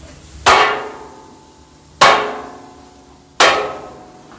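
A steel dosa spatula chopping down onto a flat metal griddle, cutting a folded dosa into pieces: three sharp metallic clangs about a second and a half apart, each ringing and dying away.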